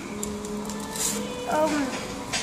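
A person's voice: a steady held hum for about the first second, then a brief spoken sound near the end.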